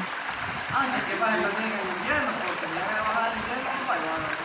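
Low, indistinct talk from several people over the steady rush of flowing river water.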